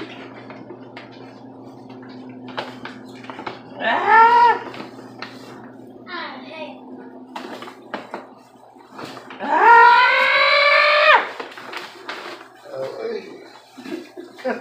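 Paper bag crackling, with scattered clicks and scrapes, as live blue crabs are tipped from it into a pot of boiling water, over a steady low hum. Two drawn-out vocal cries cut through, a short one about four seconds in and a longer, louder, rising one around ten seconds in.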